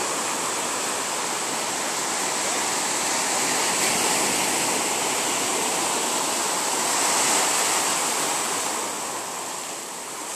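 Ocean surf breaking and washing up the beach: a steady rushing wash that swells a little about four seconds in and again around seven seconds, then eases near the end.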